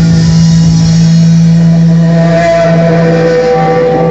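Live blues-rock band holding one long, loud distorted note on amplified electric guitar, heavy and somewhat overloaded in a phone recording; the deepest bass drops away about a second in while the note keeps ringing.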